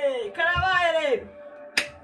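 A woman's voice in two drawn-out phrases that fall in pitch. Near the end there is one sharp smack, as a steady held tone of background music comes in.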